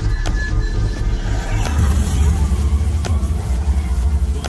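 Dark-ride soundtrack played loud over speakers: robot-battle sound effects with a heavy, deep rumble under music, growing stronger about halfway through, and a few sharp impact hits.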